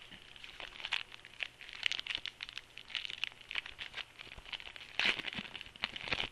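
Plastic wrapper of a 2010 Score trading-card rack pack crinkling and tearing as it is opened by hand: a busy run of irregular crackles, loudest about five seconds in.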